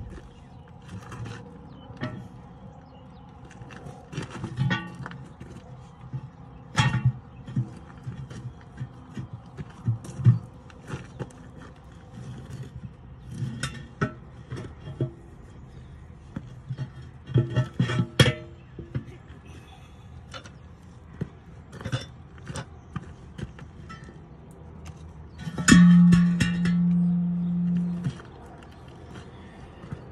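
Metal clanks and knocks from a manual tire changer and its long steel bar prying a rusty truck tire off its wheel, in irregular strikes. Near the end a loud steady tone lasts about two seconds.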